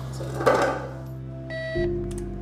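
A short, high electronic beep from an X-ray unit signalling the exposure, about a second and a half in, over background music with sustained notes.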